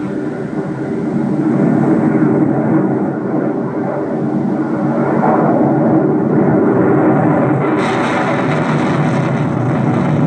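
Science-fiction film soundtrack played through a television's speaker: a rumbling spacecraft roar effect that swells over the first two seconds and then holds steady, with a brighter hiss joining about eight seconds in.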